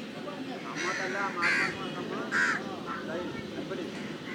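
Crows cawing: about three short calls roughly a second apart in the first half, over a low murmur of background voices.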